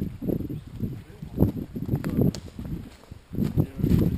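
Footsteps of a walker on a forest path thick with dry fallen leaves, an irregular run of low thuds close to the microphone.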